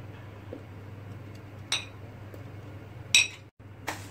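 Two sharp, ringing clinks of a glass plate against a plastic blender jar as strawberries are tipped in, about a second and a half apart, over a steady low hum.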